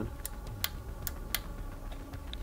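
Switch on a battery-powered lantern clicked four times in quick succession, a sharp click about every half second; the lantern does not come on because its battery is dead.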